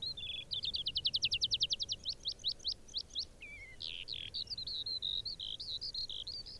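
Eurasian skylark singing in flight: a fast run of rapidly repeated high notes that slows about two seconds in, then runs on into a continuous, varied high warble.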